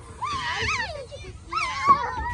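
Children's high-pitched shrieks and squeals of delight in two bursts, the pitch sweeping up and down, the second burst near the end.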